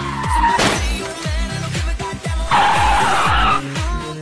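Background music with a steady beat, and over it a vehicle's tyres skidding for about a second, starting past the halfway point. A short falling squeal sounds right at the start.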